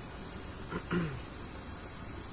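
A short, low voice sound whose pitch falls, like a brief closed-mouth hum, about a second in, over a steady low background rumble.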